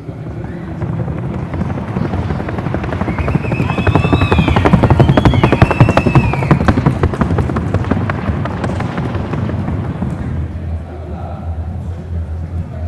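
A Colombian Paso Fino horse's hooves drumming on a wooden sounding board in a rapid, even four-beat patter. The hoofbeats grow louder toward the middle and fade near the end as the horse leaves the board. A few whistle-like rising and falling tones sound in the middle.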